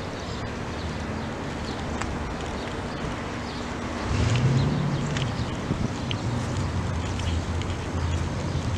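Wind noise on the microphone, joined about halfway through by a louder low, steady mechanical hum.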